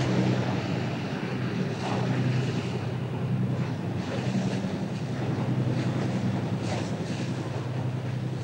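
Mersey-class lifeboat running at speed through rough sea: a steady low drone from its twin diesel engines under the rush of water and spray, with wind buffeting the microphone.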